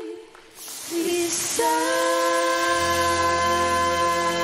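Studio audience applause and cheering swell up as a sung line ends. Music comes back in about one and a half seconds in with a long held chord under the applause.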